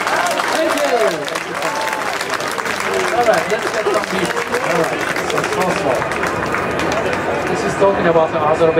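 Audience applauding with voices calling out among the claps, right after a violin piece ends; the clapping dies away near the end.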